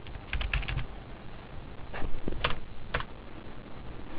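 Computer keyboard typing: a quick run of keystrokes near the start, then three single key presses about half a second apart.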